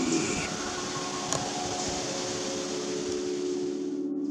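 Steady background hiss with a low, even hum under it and a faint click about a second and a half in.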